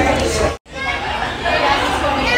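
People's voices talking and chattering, broken by a sudden brief cut to silence about half a second in.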